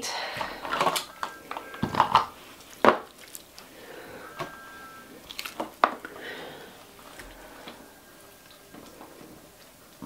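Raw beef cubes being handled and dropped onto the metal meat tray of a meat grinder that is switched off: soft handling sounds with a few sharp clinks and knocks, the loudest about three seconds in.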